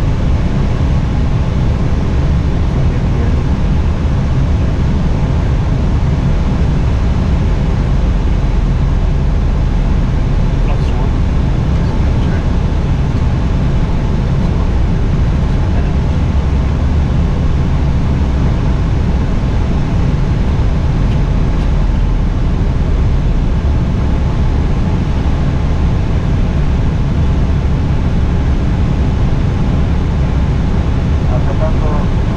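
Steady flight-deck noise of an airliner on final approach: an even, deep rumble of airflow and engines heard inside the cockpit, unchanging throughout.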